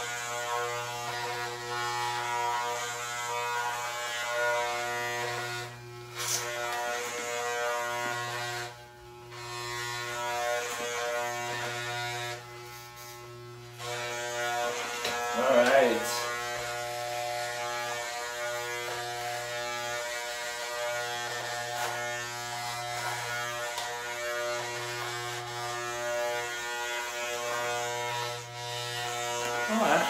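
Corded electric hair clippers with a number-three guard buzzing steadily as they cut hair. The buzz drops away briefly a few times, longest about twelve to fourteen seconds in, and a short louder sound breaks in about halfway through.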